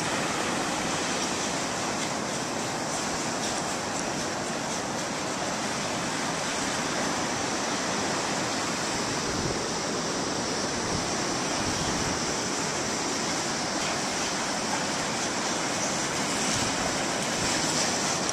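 Steady wash of ocean surf mixed with wind noise on the microphone.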